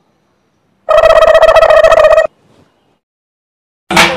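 A loud, pulsing electronic tone with a ringtone-like buzz, lasting about a second and a half and starting about a second in. It is a comic sound effect. Music with drums and wood block comes in just at the end.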